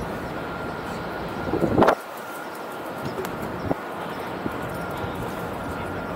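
Steady outdoor city ambience. About one and a half seconds in, a brief loud rising noise close to the microphone cuts off suddenly, followed by a few faint clicks.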